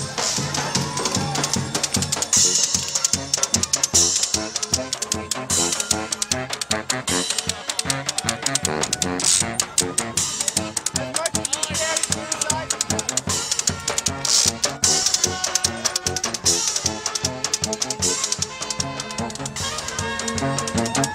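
A small street band playing a lively hora at a steady beat: accordion, tuba, saxophone, violin, washboard and drum.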